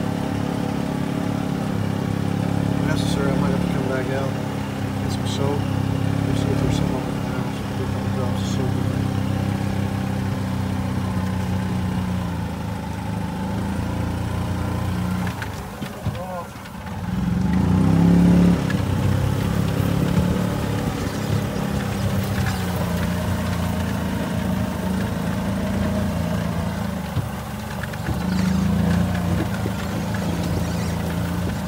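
Golf cart engine running steadily as the cart drives across the field. About sixteen seconds in it drops off briefly, then picks back up with a rising pitch.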